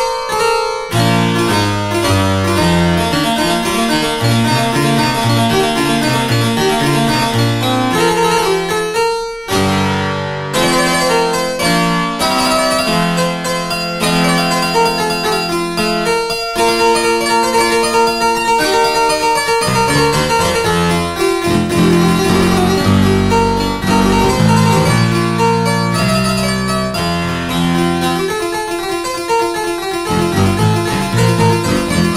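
Sampled French harpsichord (Realsamples) with both eight-foot stops together, tuned down to A = 383 Hz, played in continuous chords and runs. There is a short break about nine seconds in.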